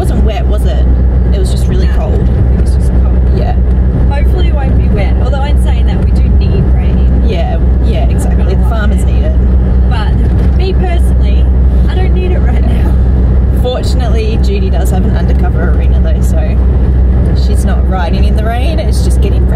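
Steady low rumble of a moving car's engine and tyres, heard from inside the cabin under the occupants' voices.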